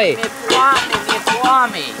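Speech only: a voice saying "mi-e foame" (I'm hungry), followed by more short bits of talk.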